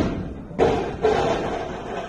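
Heavy thuds of barbells with bumper plates dropping onto lifting platforms, two about half a second apart, each ringing on in the big hall.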